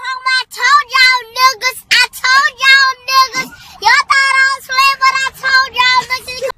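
A young girl singing in a high voice, a quick run of short syllables held mostly on one or two notes.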